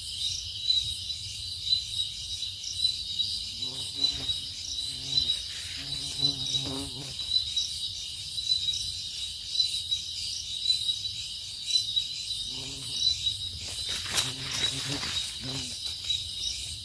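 Crickets chirping in a steady high trill with a regular pulse. A few brief low voice-like sounds come and go, and there is a sharp click near the end.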